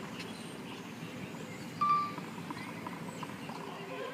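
Tennis court practice background with no ball strikes. Faint background voices, and one short, steady high squeak about two seconds in.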